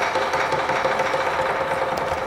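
Accompaniment music for the dragon dance: a fast, sustained percussion roll that sounds as a dense, steady rattle under a held ringing tone.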